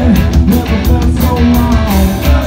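Loud live rock band playing an instrumental stretch without vocals: electric guitar over double bass and a drum kit keeping a steady beat.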